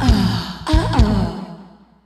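Grunge-style rock band with drum hits and notes that slide up and down in pitch. The music then dies away into a moment of silence near the end.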